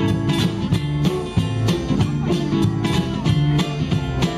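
A live vintage jazz band playing an instrumental passage with no singing: ukuleles strumming a steady rhythm over a walking double bass.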